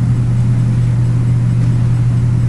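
A steady low-pitched hum, unchanging throughout, with nothing else standing out.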